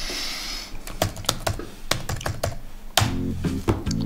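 Laptop keyboard being typed on: a quick run of separate key clicks. About three seconds in, background music comes in.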